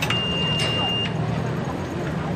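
Toyota FJ Cruiser's V6 engine running with a steady low drone as it drives onto an off-road ramp. A steady high-pitched tone sounds over it for about a second near the start.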